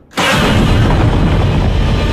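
Loud soundtrack of a giant-monster fight scene from a film: a dense, sustained wall of sound that starts a moment in, with a monster roaring.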